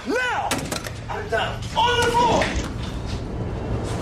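Film soundtrack excerpt: short wordless voice sounds, a sharp thud like a door slam about half a second in, and a low droning score running underneath.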